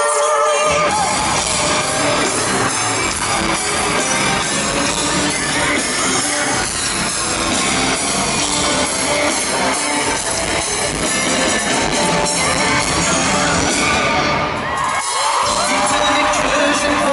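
Loud live pop concert music played through the venue's sound system, heard from the audience. The bass comes in about a second in and cuts out briefly near the end before returning.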